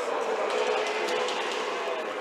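Quad roller skate wheels rolling on a wooden rink floor, a steady rushing hiss that fills the hall.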